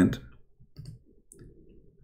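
The end of a man's spoken word, then a pause holding faint low room noise and a few small, quiet clicks.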